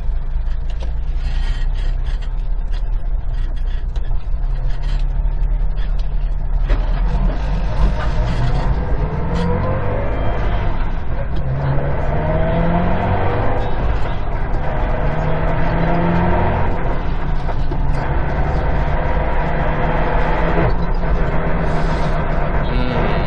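Subaru WRX STI's EJ20 turbocharged flat-four, heard from inside the cabin. It runs low and steady for about six seconds, then rises in pitch in several successive pulls with breaks between them as the car accelerates through the gears.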